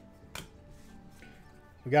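Faint background music, with a single sharp click about a third of a second in as Pokémon trading cards are handled.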